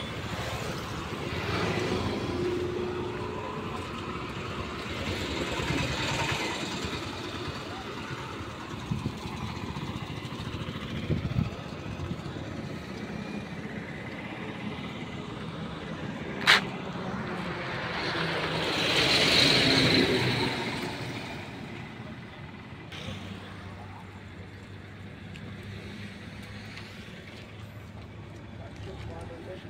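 Highway traffic going past, several vehicles swelling and fading, the loudest passing about two-thirds of the way through, with one sharp click about halfway.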